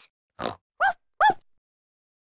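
A cartoon pig character's short snorting laugh: three quick snort-giggles in a row, each rising and falling in pitch.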